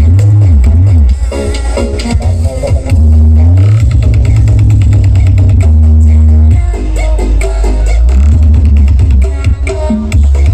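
Electronic dance music played very loud through a large BP Audio carnival sound system, dominated by deep, heavy bass. The bass line slides up and down in pitch near the start.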